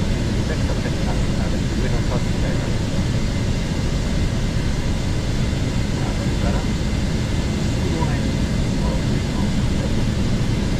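Steady cockpit noise of a Gulfstream G650 business jet in flight: a constant low rush of airflow over the flight deck with the engines' drone beneath, and faint voices mixed in.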